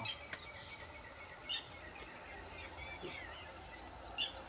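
Steady, high-pitched insect chorus, with a few faint short chirps over it.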